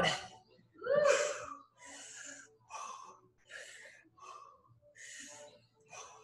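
A man breathing hard during split squats: a loud sighing exhale about a second in, then short breaths in and out at a steady pace, a little more than one a second.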